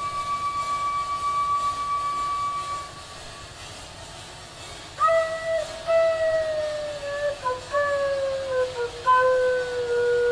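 Solo flute playing slow music: one long high note held for about three seconds, a quieter gap, then from about five seconds a lower line of long notes that slide gradually downward.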